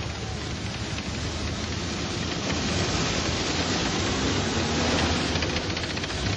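Dense, rushing battle noise, growing louder until about five seconds in, with no separate blasts or shots standing out.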